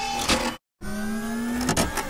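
Intro sound effect: a short stretch of noise, a sudden gap of dead silence, then a machine-like whine of several tones rising slowly in pitch, cut off abruptly near the end.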